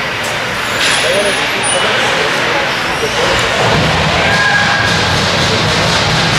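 Ice hockey game in an arena: spectators talking and calling out over the scrape of skates and scattered clicks of sticks and puck on the ice, with a steady crowd-and-rink din throughout.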